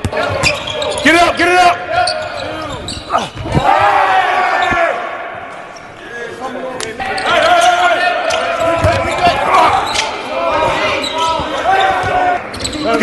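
A basketball bouncing on a gym court among players' shouting and chatter, with sharp knocks scattered through.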